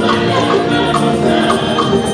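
Choir singing with a steady percussion beat, about two strokes a second.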